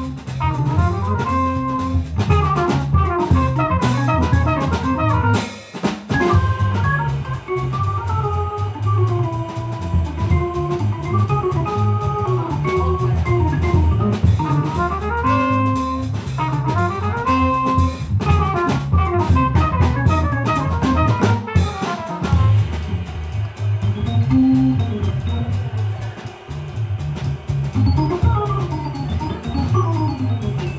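Live jazz band playing an instrumental number: an organ carrying the melody over a drum kit and a stepping bass line.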